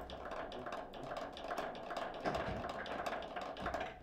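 Foosball table in play: the ball being tapped and controlled by the plastic figures, a quick irregular run of small clicks and knocks, over a steady mid-pitched hum.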